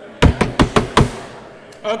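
Five quick, loud knocks, about five a second, then a man's voice begins near the end.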